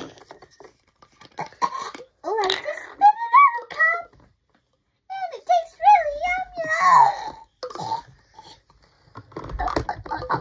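A girl's high-pitched, squeaky, chipmunk-like pretend voice babbling without clear words, in two swooping phrases.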